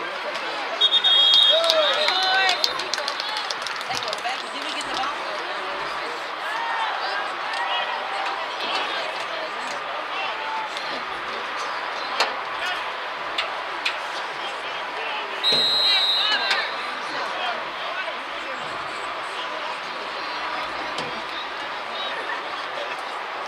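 Spectators chattering and calling out along a football sideline, with two loud, steady, high whistle blasts: one about a second in and another about fifteen seconds in.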